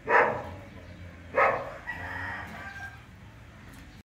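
Two short dog barks, about a second and a half apart, followed by a rooster crowing in the background, its call falling in pitch near the end.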